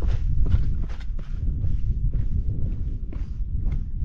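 Footsteps on loose rock and scree, a quick irregular series of crunching steps, over a steady low rumble.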